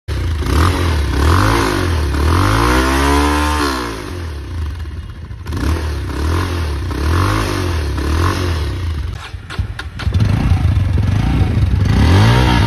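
Bajaj Pulsar 220F's single-cylinder engine being revved again and again through its side-mounted exhaust, the pitch rising and falling with each blip of the throttle. A few clicks come about nine to ten seconds in, then the revving resumes.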